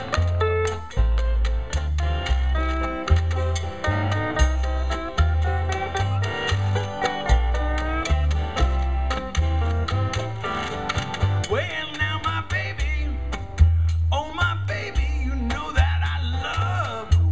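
Jug band playing live: an upright bass plucks a steady walking line under acoustic guitar and other plucked strings, with sliding notes rising and falling in the last few seconds.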